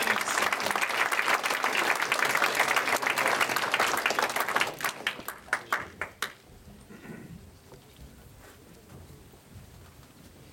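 Audience applauding: steady dense clapping that thins to a few last scattered claps about five to six seconds in, then stops.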